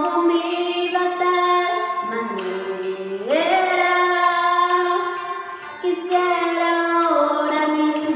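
Female voices singing a slow Spanish song in long held notes, with a sliding rise in pitch about three seconds in.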